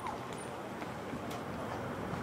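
Quiet outdoor background ambience, a steady low wash of distant noise with a couple of faint ticks.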